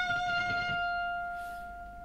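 Electric guitar holding a single sustained F sharp at the 14th fret of the high E string with vibrato, the note slowly fading away.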